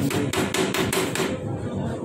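Metal spoon knocking rapidly against a stainless steel plate, about seven sharp taps a second, as curd is knocked off the spoon; the tapping stops about a second and a half in.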